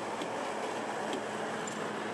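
Quiet, steady truck-yard background noise with a faint low hum and a few faint clicks.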